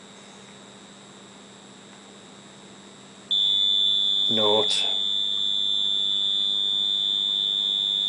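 A continuity-tester buzzer wired to the contact-breaker points of a Lucas four-lobe distributor comes on suddenly a few seconds in as one steady high-pitched tone and holds. It signals the firing point of one set of points as the distributor is turned on the timing fixture. Before it starts there is only quiet room noise.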